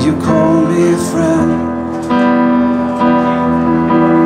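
A song played on an electronic keyboard in a piano voice: sustained chords, with new chords struck about two and three seconds in. A man's voice holds sung notes in the first second and a half.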